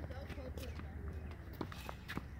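Tennis practice on a hard court: a few sharp taps from footsteps and tennis ball bounces or racket hits, the clearest near the end. There is a low steady rumble underneath and a faint voice early on.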